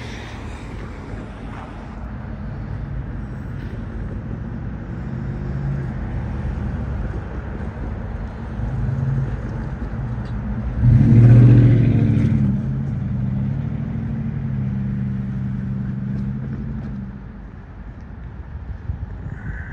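Low engine rumble with a steady hum, swelling to a loud rush about eleven seconds in, then settling back to a steady hum that drops off near the end.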